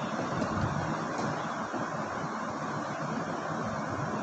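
Steady background noise picked up by the microphone: an even low hiss and rumble with no speech, broken by a couple of faint clicks in the first second or so.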